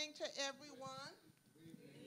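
Brief, faint, indistinct speech for about the first second, too quiet to make out words, then low room sound.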